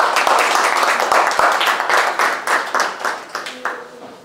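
Audience applauding: a dense run of handclaps that thins out and dies away near the end.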